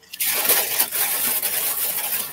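Rain on a tin roof: a pretty loud, steady hiss of densely pattering drops.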